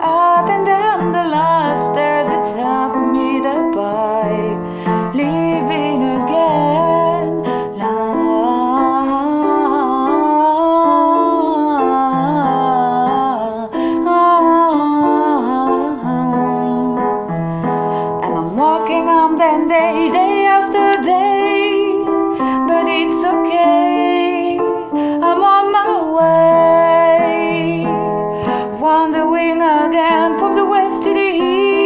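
A woman singing a pop ballad in English over piano chords, a continuous sung passage.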